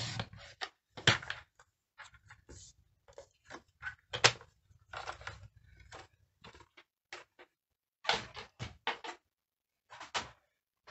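Short clicks, taps and scrapes of a paper trimmer being worked to cut cardstock and then moved aside, with louder knocks about a second in, about four seconds in and around eight to nine seconds in.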